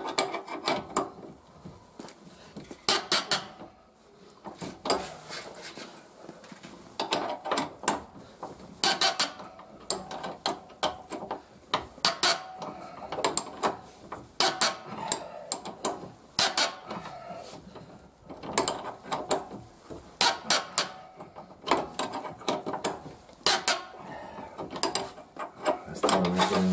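Ratchet wrench clicking in repeated short bursts as the rear axle's mounting bolt is unscrewed.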